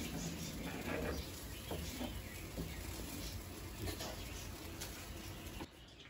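A wooden spoon stirs a thick cream sauce simmering in a cast-iron skillet over a gas burner: soft scattered scrapes and ticks over a steady low hum, cutting off shortly before the end.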